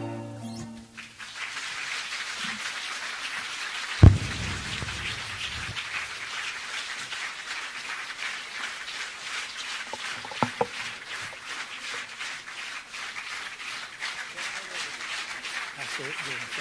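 The last notes of a song end in the first second, followed by sustained applause. A single loud thump comes about four seconds in, and two small knocks come around ten seconds.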